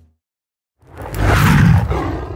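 A loud roar sound effect after a brief silence, starting just under a second in, swelling and then fading away.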